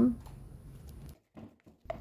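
Faint room tone with no distinct sound in it, dropping to dead silence for under a second just past the middle, as at an edit cut.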